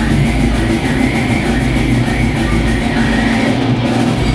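Live death metal band playing loud, with heavily distorted electric guitar over drums and cymbals.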